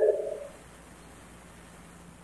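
A man's voice trails off in the echo of a large room, then quiet room tone with a faint steady hum.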